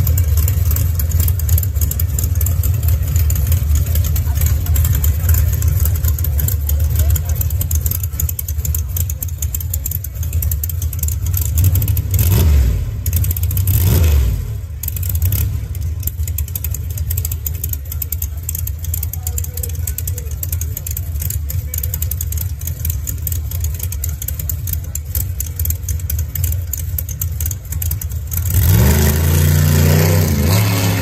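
Drag car's engine idling with a steady low rumble at the starting line, blipped twice about halfway through. Near the end it goes to full throttle for the launch, loud, with the pitch climbing.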